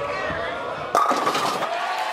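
Bowling ball rolling down the lane, then crashing into the pins about a second in, with the pins clattering.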